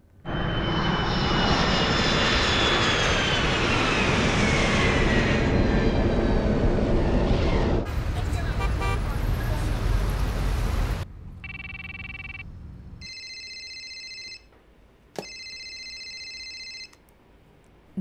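A jet airliner passing overhead, its whine falling in pitch, running into city street traffic noise. Then a short electronic tone and a mobile phone ringing twice.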